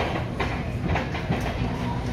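Shopping cart rolling over a hard store floor: a steady low rumble with clicks about twice a second.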